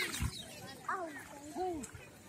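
Voices of people bathing in the pool: short calls and exclamations that glide up and down in pitch, with a brief low thump just after the start.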